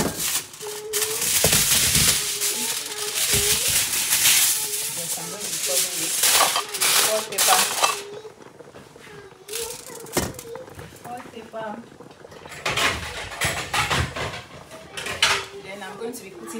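Aluminium foil being handled and crumpled over a cooking pot: loud crinkling and crackling for about the first eight seconds, a quieter spell, then a second bout of crinkling near the end.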